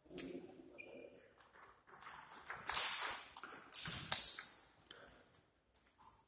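Table tennis ball being hit back and forth in a rally, sharp clicks of the ball off the rubber bats and the table, with a little hall echo. The rally ends about five seconds in.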